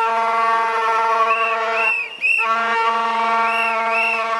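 Bagpipe playing a tune over a steady drone, with a short break in the sound about two seconds in.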